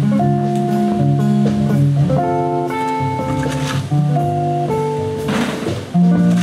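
A jazz quartet playing, with guitar and a melody of long held notes over a steady bass line.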